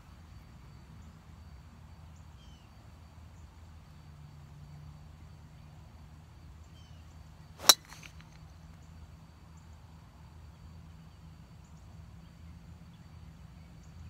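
Golf driver striking a teed ball: a single sharp crack of the clubhead on the ball a little past halfway in, over a faint steady low hum.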